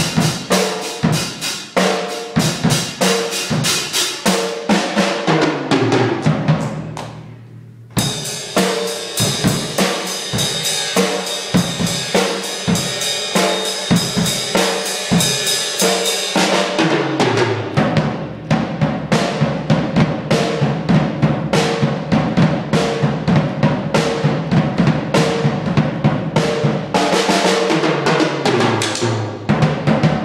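A Premier drum kit played in a solo, with fast strikes on the bass drum, snare, toms and cymbals. About six seconds in, the playing dies away briefly, then starts again suddenly with a denser, busier stretch and carries on with steady hits.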